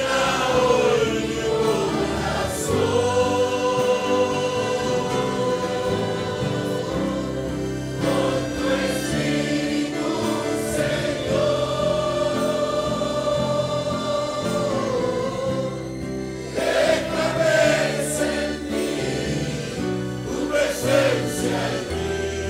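Congregation singing a slow Spanish-language worship chorus together in long held notes, over a steady low musical accompaniment.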